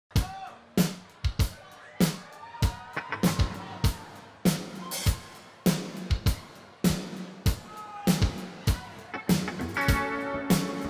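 Live drum kit playing a steady intro beat with sticks, bass drum and snare hits repeating evenly.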